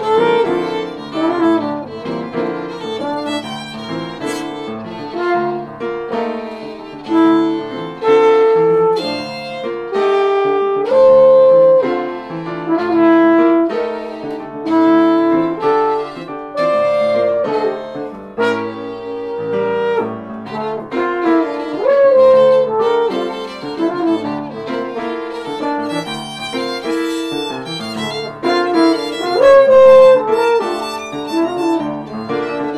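Live jazz trio of French horn, violin and piano playing a tune together, with sustained horn and violin notes over piano.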